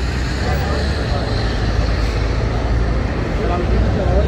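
Crowd of pedestrians on a busy city street: scattered chatter of passers-by over a steady low rumble of traffic.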